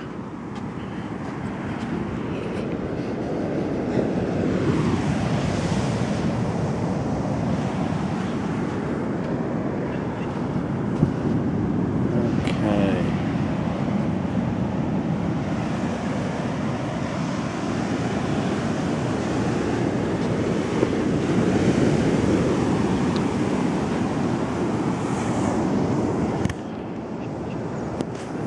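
Surf breaking on a sandy beach mixed with wind buffeting the microphone: a continuous rush that swells and eases a few times.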